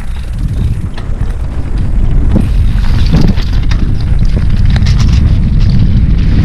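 Wind buffeting the microphone of a camera on a mountain biker riding fast downhill on a dirt trail, with the bike's tyres rumbling and many sharp rattling clicks from the bike over bumps. It grows louder over the first two seconds as speed builds, then holds steady.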